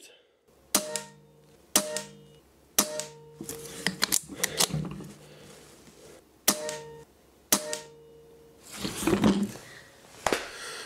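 Gamo Coyote .177 PCP air rifle firing five shots, each a sharp crack with a short metallic ring after it. The shots come in two runs, three about a second apart and then two more, with lighter clicks of the action and pellet strikes in between.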